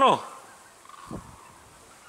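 Faint distant calls of a feeding flock of hooded cranes and geese, with a soft low bump about a second in.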